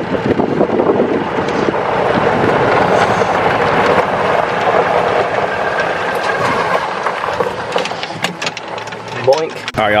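Steady rush of wind and movement noise on a golf cart driving along, with no clear engine note.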